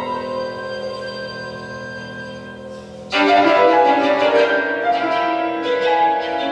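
Violin and piano playing a modern classical piece live: held notes die away quietly, then about three seconds in both come in suddenly and loudly with a busy run of notes.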